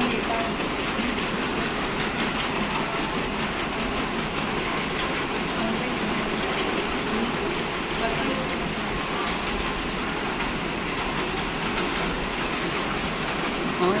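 Airport moving walkway running: a steady mechanical rumble and hiss from the moving belt, with the hum of the terminal around it.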